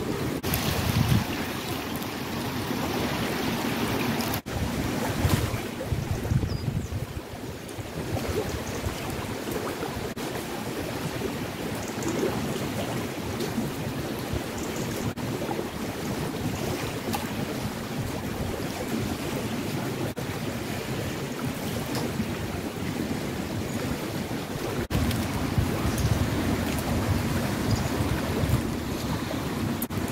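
A fast-flowing river rushing steadily, with gusts of wind buffeting the microphone now and then.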